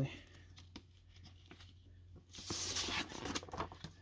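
Paper inner sleeve rustling as a vinyl LP slides out of it: a papery hiss lasting about a second and a half, starting a little past halfway, after a few faint handling clicks.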